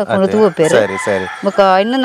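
A rooster crowing once in the background, starting about half a second in and lasting roughly a second, over a woman's talk.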